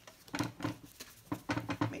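Hands wiping with a baby wipe and handling a glued paper envelope on a cutting mat, giving a string of short rustles and taps.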